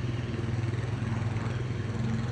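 Quad bike engine running as it goes past, a steady low drone with no change in pitch.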